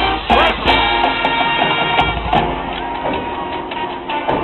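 High school marching band playing a brass-led chord, held for about a second and a half near the middle, over sharp percussion strikes.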